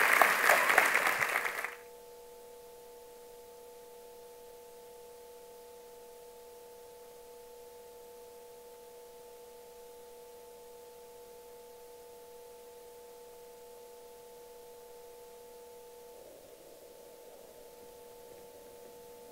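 Audience applause for about the first two seconds. It cuts off and leaves a steady, quiet drone of a few held pure tones that does not fade.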